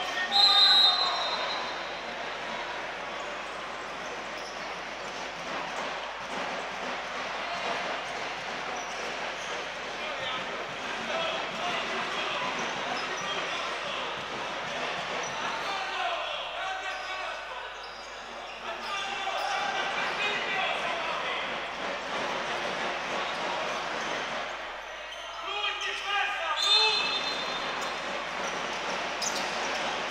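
Many voices of players and spectators echoing in an indoor basketball hall while play is stopped, with a basketball bouncing. A short, high whistle blast comes right at the start and another about 27 seconds in.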